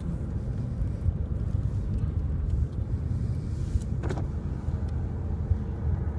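Steady low rumble of a car driving, heard from inside the cabin: engine and road noise with no speech.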